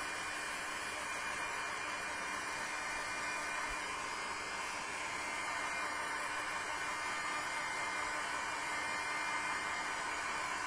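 Handheld electric blower running steadily: an even rushing hiss with a faint hum under it.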